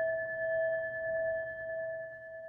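A singing bowl ringing on after a single strike: a clear, steady tone with a higher overtone above it, slowly fading.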